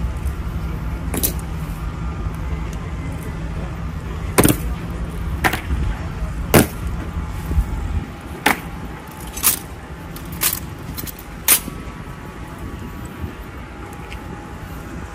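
Honor guards' rifle drill on stone pavement: a series of sharp knocks and clicks from rifles being handled and boots stamping, falling into an even beat of about one a second in the second half. A low rumble underneath stops suddenly about eight seconds in.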